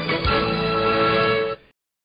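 Radio programme jingle music ending on a sustained chord that cuts off suddenly about a second and a half in.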